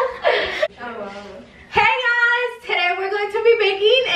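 Girls' voices laughing and talking excitedly, with long drawn-out vocal sounds in the second half.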